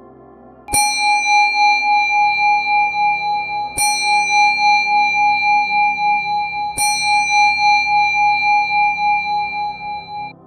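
A bell tone struck three times, about three seconds apart. Each strike rings on with a pulsing hum, over soft background music.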